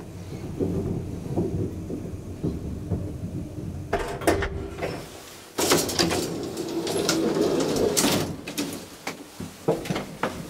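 An old lift car running with a low hum, then a click about four seconds in as it stops. From about five and a half seconds the car's metal scissor gate rattles as it is pulled open, for about two and a half seconds, with latch clicks near the end.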